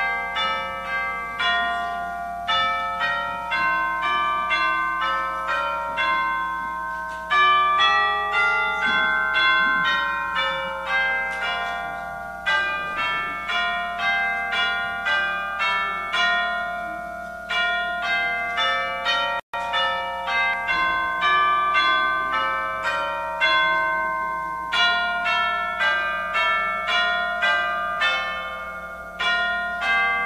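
A set of Musser tubular chimes struck with a mallet, one note after another in a melody. Each bright tone rings on under the next. The sound cuts out for a split second about two-thirds of the way through.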